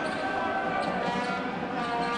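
A basketball being dribbled on the court, its bounces heard over the steady voices of an arena crowd.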